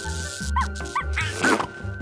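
Online slot game audio: a backing music loop with a steady beat, over which a steady electric buzz tone runs while several short cartoon bird squawks, each rising and falling in pitch, sound as the winning birds on the wire are zapped.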